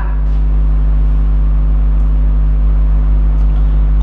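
A steady, loud low hum made of several even tones, with no speech over it. It is the constant background hum of the lecture room's recording.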